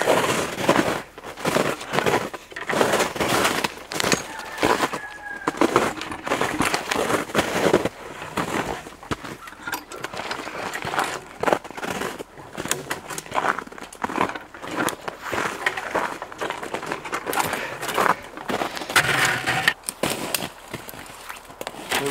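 Footsteps crunching through snow as a person walks through woods, an uneven run of short crunches that goes on throughout.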